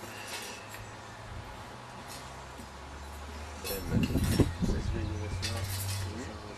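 Crockery clinking now and then on a café table, with indistinct voices talking in the second half over a steady low hum.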